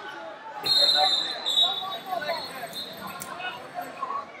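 A referee's whistle gives one shrill blast about half a second in, lasting about a second, the loudest sound here. Underneath is the steady babble of many voices echoing in a large hall, with a few dull thuds.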